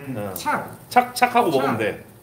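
Speech only: a man talking, with no other clear sound.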